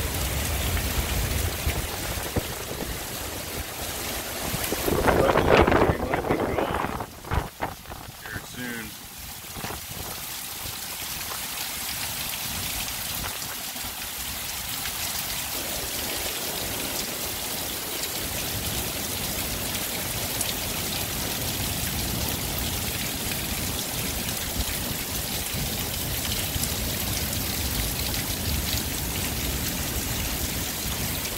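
Heavy thunderstorm rain falling steadily, driven by strong wind. About five seconds in, a louder surge of noise lasts roughly two seconds and is followed by a few sharp knocks.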